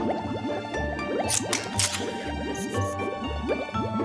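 Cartoon background music with a steady bass pulse, overlaid with watery bubbling sound effects made of many quick rising bloops, and two short hissy bursts in the middle.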